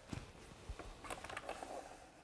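Faint light clicks and handling noise from hands adjusting a repetitive stop on a track-saw cutting table's guide rail.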